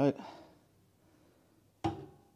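Wood-burning stove's glass-fronted door pushed to near the end: a single sharp metallic clunk with a short ring. The fire has just been lit and the door is left ajar to help it draw.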